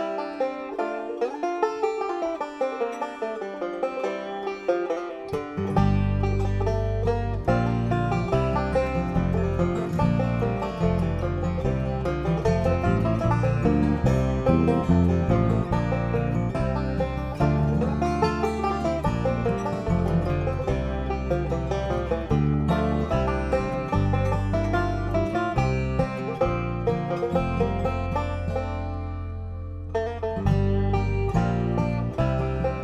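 Acoustic string trio of five-string banjo, acoustic guitar and bass guitar playing an instrumental bluegrass-style tune, the banjo picking rapid runs over strummed guitar. The bass comes in about six seconds in and carries a steady low line from then on.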